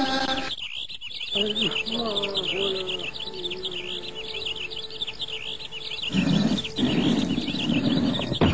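Dense, continuous chorus of high, quick chirps, like an outdoor nature ambience. A faint low wavering sound runs under it in the first few seconds, and a louder low rush comes in about six seconds in.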